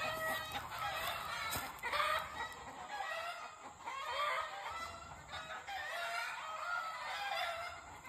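Several chickens clucking and calling over one another.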